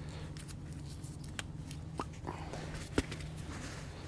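Faint handling sounds as a brake caliper slide pin is worked in its rubber boot on the caliper bracket: a few small clicks, the sharpest about three seconds in, over a faint steady low hum.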